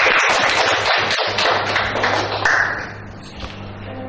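A roomful of students clapping, a dense patter of claps that dies away about three seconds in.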